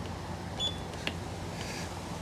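KingSong 18XL electric unicycle, switched on by accident, giving one short high beep about two-thirds of a second in, followed by a single click about a second in.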